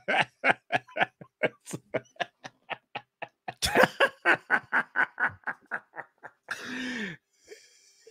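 Two men laughing hard: a long run of short, rapid laughs, about four or five a second, with a louder fresh burst about halfway through and a longer breathy sound near the end.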